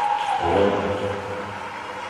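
A person's shout or cheer, pitch falling, held for about a second, over the steady background noise of an indoor pool hall, typical of teammates cheering a completed dive.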